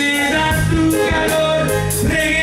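Live band playing: electric guitars, bass and drums in a steady groove, with a male voice singing over it.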